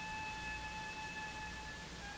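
A steady high tone with overtones, held with a slight change in pitch near the end, over the hiss and low hum of an old live broadcast recording.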